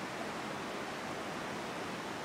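Steady rush of river water, an even noise with no breaks.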